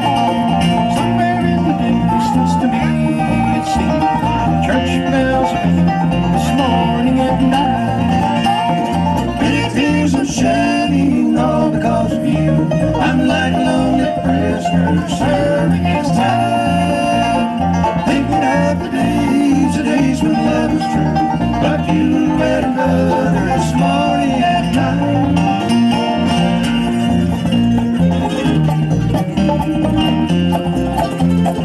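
Live bluegrass band playing: banjo, mandolin, acoustic guitar and electric bass together, at a steady level throughout.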